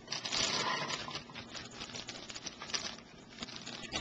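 Fresh cranberries pouring out of a plastic bag into a stainless steel saucepan: a dense patter of berries hitting the pan and each other, thinning out after about a second and dying down near the end.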